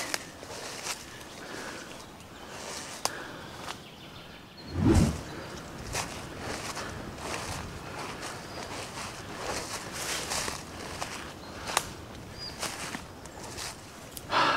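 Footsteps wading through dense wild garlic on the forest floor, the leaves swishing against legs and feet step after step. A few sharp clicks are scattered through, and a low thump about five seconds in is the loudest sound.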